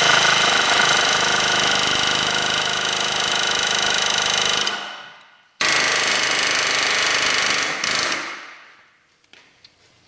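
Astro Pneumatic 4980 .498-shank air hammer hammering rapidly on a rusted front ball joint, driving it loose from the steering knuckle. It runs in two bursts: a long one of about four and a half seconds, then a shorter one of about two seconds, each dying away as the trigger is let go.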